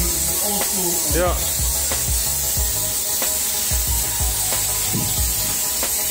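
High-pressure wash lance spraying water onto a motorcycle, a steady hiss, while rinsing it off. Background music with a low, regular beat plays underneath.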